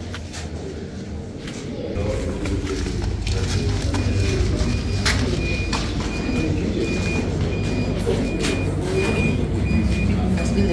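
A steady low rumble with faint murmuring voices, joined about two seconds in by a high electronic beep repeating about twice a second.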